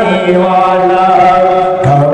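A man singing a Bengali naat, a devotional song in praise of the Prophet, in a chanting style into a microphone, holding long drawn-out notes. A new phrase begins with a rising swoop near the end.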